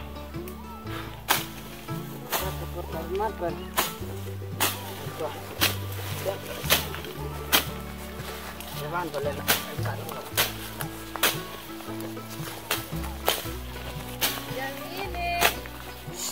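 Background music with a moving bass line, over sharp chops at irregular intervals, about one a second: a machete cutting through weeds and brush.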